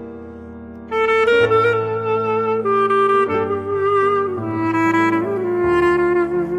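Clarinet playing an ornamented Armenian melody with slides and wavering held notes over a held accompaniment of chords and bass. A held chord fades at first, then the clarinet comes in loud about a second in.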